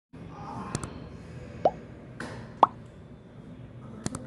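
Short mouth pops from a person signing, each rising quickly in pitch, twice near the middle, with a couple of sharp clicks a little before.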